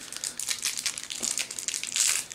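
The plastic wrapper of a Cadbury Double Decker chocolate bar being crinkled and torn open by hand: a steady run of irregular crackles.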